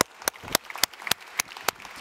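Applause, led by one person's sharp, evenly spaced hand claps close to the microphone, about three and a half claps a second.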